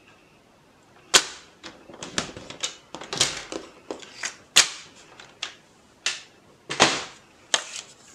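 Irregular sharp clicks and clacks, about eight of them, from a plastic paper trimmer and cardstock being handled while a fold line is scored and the strip folded. The loudest comes about a second in.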